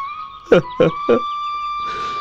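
A man's voice in three short, quick syllables about half a second in, over background music holding one steady high note.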